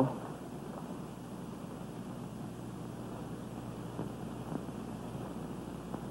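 Steady hiss and low hum of an old film soundtrack, with a faint single knock about four and a half seconds in.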